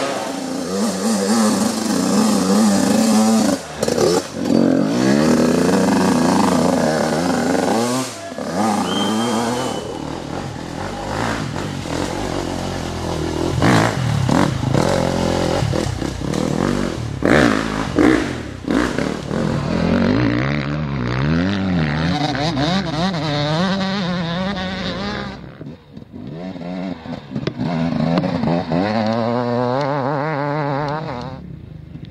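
Off-road dirt-bike engines revving hard as riders pass one after another on a dirt course. The pitch climbs and falls again and again as the throttle opens and closes, with a brief drop in loudness near the end.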